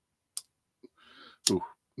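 Blade of a vintage multi-blade pocket knife snapping on its backspring: a sharp click, then a softer rustle of handling and a second click about a second later. The action snaps well but the joint is dry and needs lubrication.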